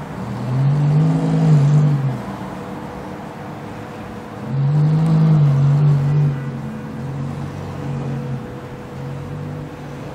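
Lamborghini Gallardo's V10 engine revved twice, each rev climbing and falling back over about a second and a half, about four seconds apart. Between and after the revs it runs at low revs with small swells as the car pulls away.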